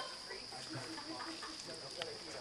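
Crickets chirping at night in a steady, continuous high-pitched chorus, with faint voices talking in the background.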